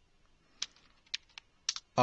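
Computer keyboard being typed on: a handful of quick keystrokes in uneven bunches, starting about half a second in.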